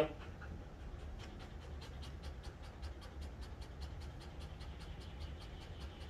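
A dog panting quickly and steadily, about four to five breaths a second.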